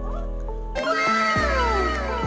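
Background music with a steady beat; about a second in, a long falling glide of several tones sweeps down over it.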